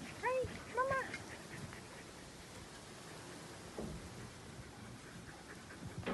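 A dog gives two short, high yips about half a second apart near the start, each rising and falling in pitch; faint rustling follows.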